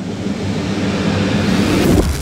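A wind-like whoosh sound effect: a rushing noise that swells steadily louder toward the end.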